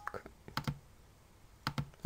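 Several light, sharp clicks of computer input, a few in the first second and a pair near the end, with quiet room tone between them.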